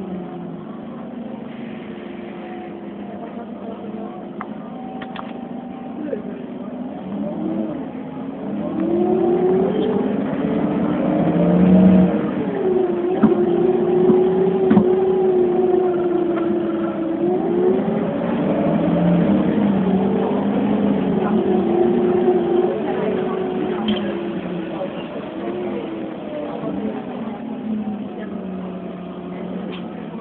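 Iveco Cursor 8 CNG engine of an Irisbus Citelis city bus heard from inside the bus. It runs steadily, then rises in pitch as the bus accelerates to its loudest point, holds, dips as the automatic gearbox shifts up, rises again, and sinks toward the end as the bus slows.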